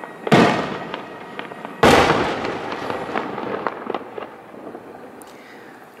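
Two firework bursts about a second and a half apart, each a sudden bang followed by a long fading echo, with a few faint pops later on.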